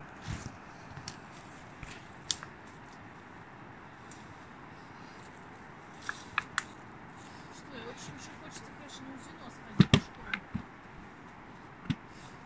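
Footsteps pushing through tall grass and undergrowth on a steep descent, with scattered clicks and snaps and a cluster of sharper knocks about ten seconds in, over a steady hiss.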